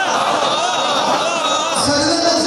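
A man's voice reciting into a microphone and carried over a loudspeaker, in a drawn-out, sing-song delivery.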